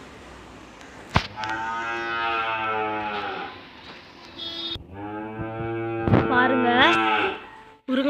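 A cow mooing twice, each call long and drawn out at a steady low pitch for about two seconds, with a sharp click just before the first.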